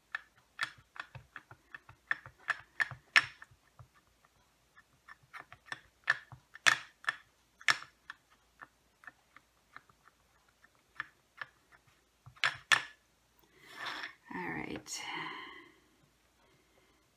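Irregular runs of quick plastic taps and clicks as a small ink pad is dabbed repeatedly onto a stamp on a clear acrylic block to ink it with plum ink. A short stretch of voice comes near the end.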